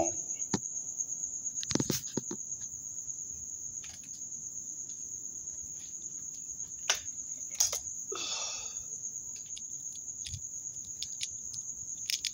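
An insect trilling steadily in one high tone, with a few scattered sharp clicks and knocks, the loudest about two seconds in and about seven seconds in, and a brief rustling burst about eight seconds in.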